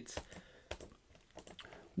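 A few faint, scattered clicks from a computer keyboard.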